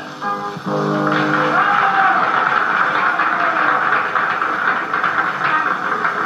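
A short orchestral chord closes the song, then a crowd applauds steadily, heard on an old film soundtrack.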